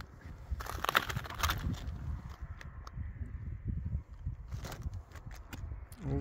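Footsteps crunching over loose, sharp, freshly cooled lava rock, with a cluster of louder crunches about a second in and lighter scrapes and clicks later.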